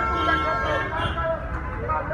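A vehicle horn sounding in a long, steady blast, with men's raised voices over it.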